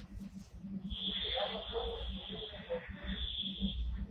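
A steady high-pitched tone that comes in about a second in and holds for about three seconds, over a faint low hum and indistinct background murmur.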